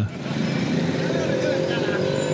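Street traffic with a city bus's engine running steadily as it passes, among motorbikes and the voices of people nearby.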